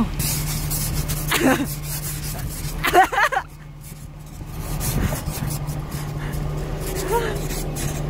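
Plastic ice scraper rasping frost off a truck's window glass in repeated short strokes, over a steady low hum.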